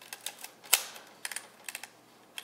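Sharp mechanical clicks from a Honeywell Pentax Spotmatic 35mm SLR as its shutter is tested at different speeds: one loud shutter click a bit under a second in, then two quick runs of smaller clicks as the camera's controls are worked.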